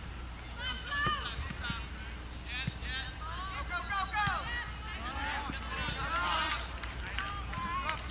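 Distant shouts and calls of voices across a soccer field during play, many overlapping, over a steady low hum.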